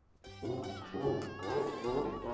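A short edited sound-effect sting: music with an animal-like cry over it, starting about a third of a second in, with a wavering high tone that slowly slides down.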